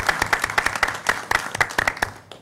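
A small group of people applauding, the claps dying away near the end.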